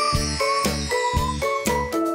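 Upbeat background music with a quick, steady beat, about four strokes a second, and short, high pitched notes on top.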